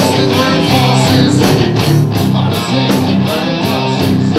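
Live rock band playing loudly: electric guitar and bass over a steady drum beat.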